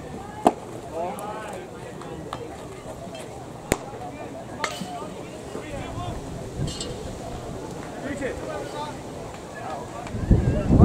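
A sharp smack about half a second in as a pitched baseball lands in the catcher's mitt, over faint talk from players and spectators. A few fainter clicks follow later.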